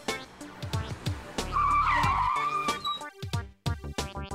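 Car tyres screeching in one wavering squeal of under a second about halfway through, over the backing beat of a rap theme song.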